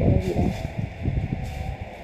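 Low, irregular rumbling and bumping noise, loudest in the first second and fading out near the end, like handling noise on the recording microphone.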